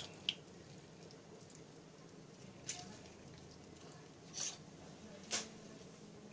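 A lemon squeezed by hand over diced chicken in a plastic bowl: a few brief, faint squelches and taps, spread out with quiet between them.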